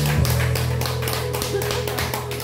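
Instrumental backing track of a Korean pop ballad playing through speakers, with held low bass notes under a fast, steady ticking beat.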